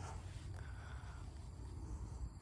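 Quiet outdoor background with a steady low rumble and a faint, thin held tone lasting under a second, about half a second in.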